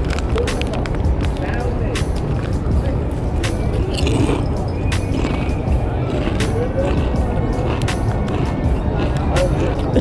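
Kettle-cooked potato chips crunching as they are chewed, in many short sharp crackles, with the foil chip bag crinkling, over background music and steady street traffic.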